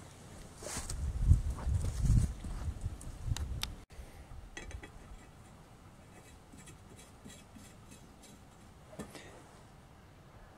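Low rumbling handling noise with a few sharp clicks for the first four seconds, then faint, scattered light clicks as a bolt is turned by hand into the freshly re-threaded heat riser bolt hole of an exhaust manifold, the new threads holding.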